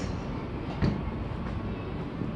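A golf club striking a ball once, about a second in, a short sharp crack, over a steady low background rumble.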